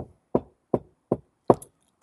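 Five sharp, even knocks on a hard surface, a little under three a second.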